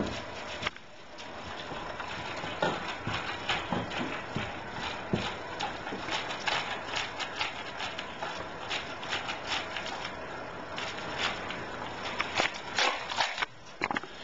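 A dog eating dry kibble from a slow-feeder bowl with a raised centre post. It makes quick, irregular crunches and clicks as the kibble is chewed and knocked against the bowl. A single knock comes about half a second in as the bowl is set down on the tile floor.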